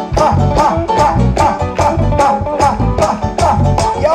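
A live salsa band playing at full volume with a steady, driving beat: conga drums, bass guitar and hand percussion under a lead vocal.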